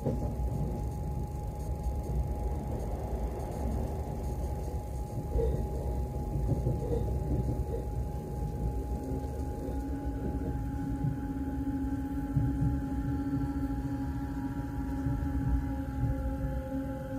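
Electric multiple-unit train heard from inside the passenger car: a steady low running rumble with a faint constant whine, joined about nine seconds in by a steady higher electric whine from the traction equipment as the train pulls into a station platform.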